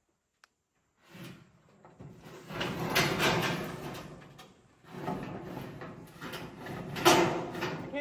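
A ribbed roofing panel scraping as it is slid across wooden rafters, in two long pushes, the first starting about a second in and the second about five seconds in, with a sharp loudest scrape near the end.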